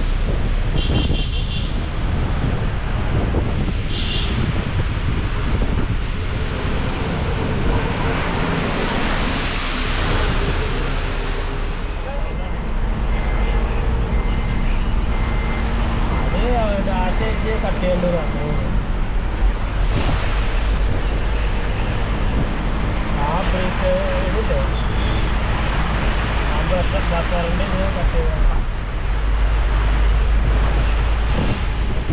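Wind buffeting the microphone over the steady low rumble of a vehicle moving along a road. Short pitched sounds come and go in the second half.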